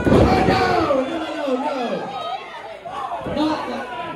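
A wrestler slammed onto the ring mat with a heavy thud at the very start, followed by spectators shouting and chattering in reaction, with another dull thump near the end.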